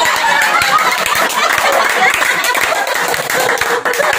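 A small group laughing and talking over one another.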